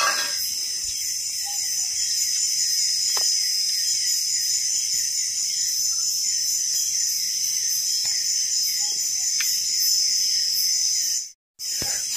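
Steady, high-pitched chorus of tropical forest insects with a fast pulsing texture, and a few faint clicks. The sound drops out briefly near the end.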